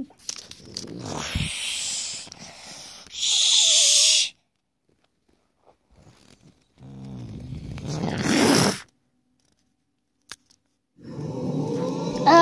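A child's voice making monster noises for toy creatures: a long hissing roar, a pause, then a lower growling roar, each a few seconds long. Near the end a child's voice starts a wavering, swooping cry.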